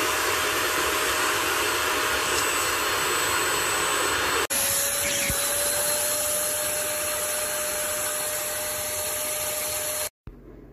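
Suction motor of a handheld wet-and-dry sofa and carpet washer running steadily, a rushing noise with a steady whine. It drops out for an instant about four and a half seconds in and resumes at much the same pitch.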